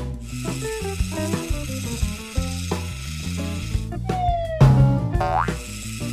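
Bouncy cartoon background music made of short plucked-sounding notes. About four seconds in, cartoon sound effects: a falling whistle-like glide, a loud low thud, then a quick rising glide.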